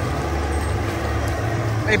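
Party foam cannon running, its blower giving a steady low rumble and a rushing hiss as it sprays foam. A voice calls out at the very end.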